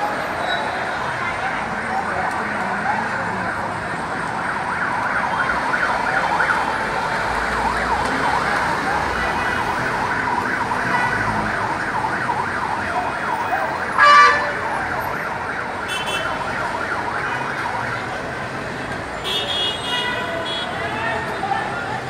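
Emergency vehicle siren wailing over city traffic noise, with a short loud blast about fourteen seconds in.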